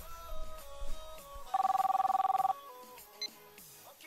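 Music, then a telephone ringing for about a second midway: two steady tones pulsing rapidly. A few melodic notes follow.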